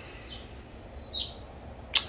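Quiet background room tone with a low steady hum during a pause in speech, broken by one brief faint noise about a second in.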